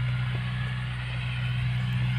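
Iseki NT 548F tractor's diesel engine running at a steady, even drone under load while pulling a bed-forming (bedengan) implement through a field.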